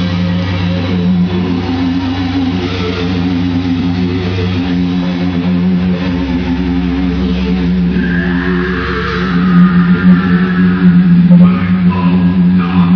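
Heavy metal band playing live, electric guitars and bass holding long, low chords, heard from the audience in a large arena. The music grows louder from about eight seconds in.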